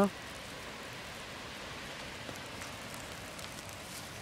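Pork steaks sizzling on the grate of a small charcoal grill: a steady, even hiss with a few faint ticks.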